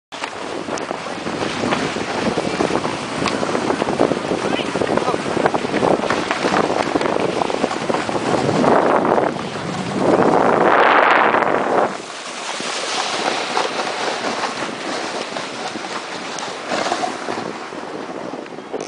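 Skis of a home-made ski sled hissing and scraping over packed snow, a continuous rough crackly noise. It swells loudest for a couple of seconds about ten seconds in, then eases off.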